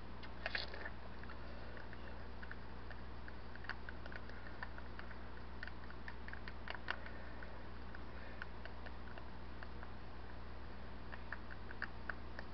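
Wooden craft stick stirring thinned black acrylic paint in a small plastic cup: faint, scattered clicks and light scrapes against the cup over a steady low hum.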